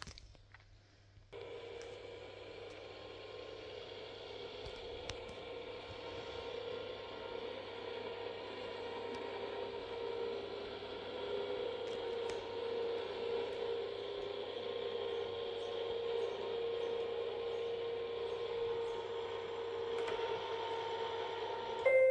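Electric motor of a Raizer patient-lifting chair running steadily as it lowers the empty seat from fully raised to the floor. It starts about a second in and stops near the end.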